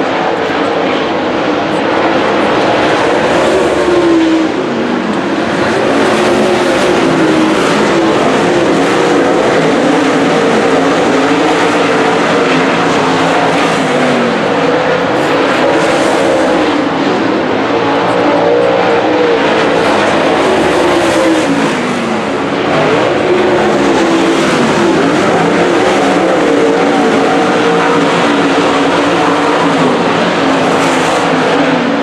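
A pack of dirt late model race cars running V8 engines at racing speed around a dirt oval. Several engines sound at once, loud and continuous, their pitch rising and falling as the cars lap past.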